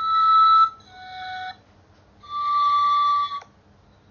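Recorder music: a slow tune of single held notes, broken by a short pause in the middle.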